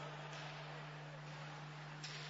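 Quiet, even background noise of an ice hockey arena, with a steady low electrical hum running under it.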